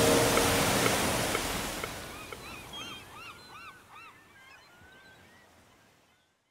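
Ocean surf washing and fading out, with a quick run of short bird calls, each rising and falling in pitch, in the middle of the fade.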